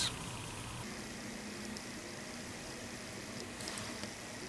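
Faint steady hiss of room noise with a low hum, and a brief soft noise near the end.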